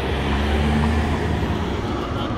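Delivery box truck's engine running as it drives past, a low drone that swells in the first second and then eases.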